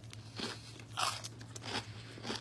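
Close-up crunching as a person bites and chews a crisp waffle-maker fried pickle in a shell of melted shredded cheese, about three crunchy chews. The crunch shows that the cheese crisped even though the pickles were wet.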